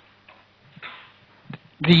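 A few faint, short taps and scratches of writing on a surface, over a steady low hum.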